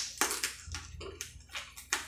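Close-miked mouth sounds of eating crab: lips smacking and sucking meat from the fingers, a quick run of short clicks, several a second.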